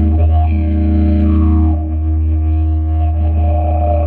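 Didgeridoo played live: one loud, steady low drone held throughout, its upper overtones shifting in a rhythmic pattern as the player reshapes the tone.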